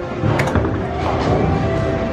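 Arcade machine music and electronic game sounds over the hall's din, with a sharp knock about half a second in.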